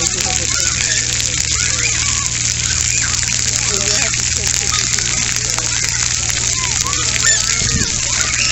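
Scattered, overlapping voices of children and adults at a distance, over a steady hiss of water spraying from splash-pad jets.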